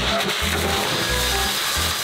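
One-inch crushed-stone gravel pouring and sliding out of a tipper truck's open tailgate, a steady rushing hiss. Background music with a low bass line plays under it.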